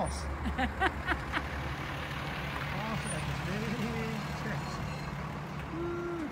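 A vehicle engine idling with a low, steady hum, with indistinct voices over it in the first second or so and again midway.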